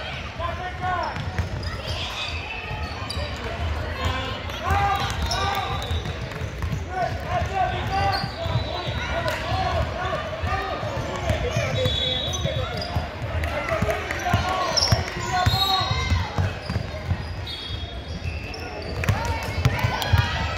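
A basketball dribbled on a hardwood gym floor, its bounces echoing in a large hall, under a constant mix of players', coaches' and spectators' voices shouting and calling.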